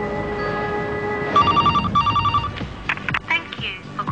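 Sustained music chords end, then a telephone rings about a second and a half in, an electronic trill in two short bursts.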